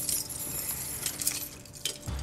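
Keys and steel handcuffs jingling and clinking, with light clicks, as handcuffs are unlocked.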